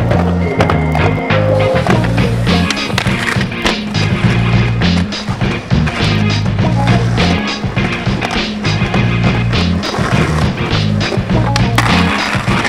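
Skateboard wheels rolling on concrete, with sharp clacks of the board hitting the ground, over backing music with a steady bass line.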